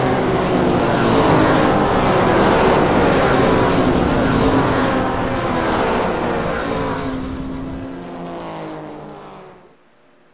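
Race car engines running in a sound-effect intro, fading out over the last few seconds.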